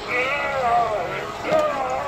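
A high, wavering, wordless voice, drawn out and gliding up and down in pitch, with a short break about one and a half seconds in.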